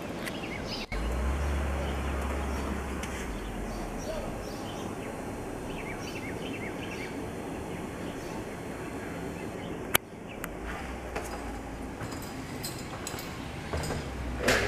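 Outdoor ambience with birds chirping here and there over a steady low rumble, and a single sharp click about ten seconds in.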